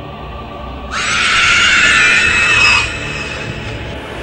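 A loud, high shriek that starts suddenly about a second in and cuts off about two seconds later, over dark, ominous background music.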